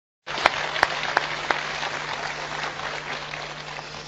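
Audience applauding, cutting in just after the start and slowly dying away, with a few sharper single claps standing out in the first second and a half. A low steady hum runs underneath.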